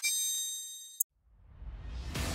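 Logo sting sound effect: a bright metallic ding with several ringing tones that fades over about a second. It ends with a sharp click, then a short silence and a rising swell.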